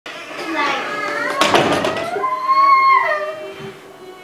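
A young girl crying without words: a high, wavering wail that ends in one long held note about two and a half seconds in, then fades.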